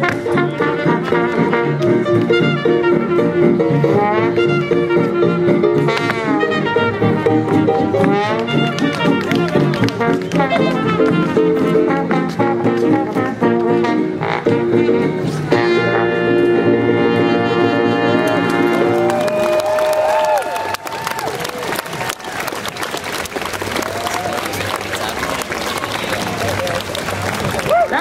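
A live jazz band with brass plays a 1920s-style swing number that ends about two-thirds of the way through; a crowd then applauds and cheers.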